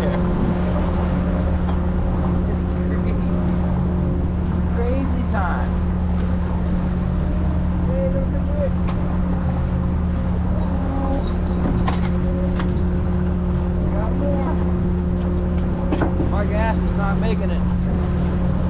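Fishing boat's engine running steadily while trolling, a constant low drone. Scattered light clicks come about two-thirds of the way through.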